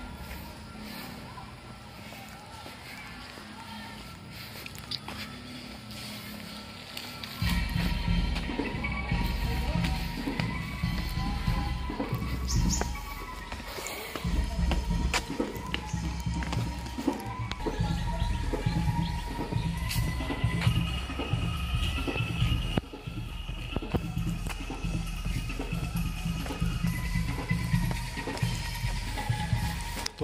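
Angklung music in the distance, bamboo rattles sounding a tune. From about seven seconds in, a loud low rumble on the microphone joins it.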